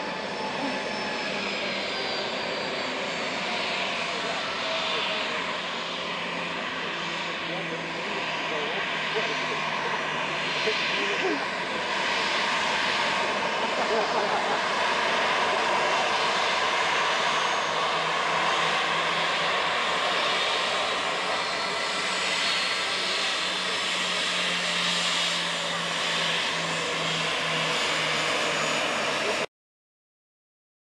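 Jet2 Boeing 737's CFM56 turbofan engines running at low taxi power as the airliner rolls slowly past: a steady jet whine and rush over a low hum, growing louder about halfway through, then cutting off abruptly just before the end.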